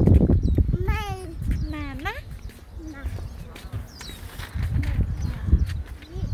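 A few short, high-pitched voice sounds that slide up and down in pitch, one rising sharply about two seconds in, over a low rumbling noise on the microphone.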